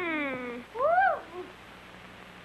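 Two high, pitched cartoon cries on the soundtrack: a long downward-gliding wail at the start, then a short call that rises and falls about a second in.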